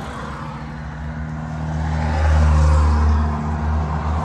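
A motor vehicle's engine running with a steady low rumble, swelling louder about halfway through.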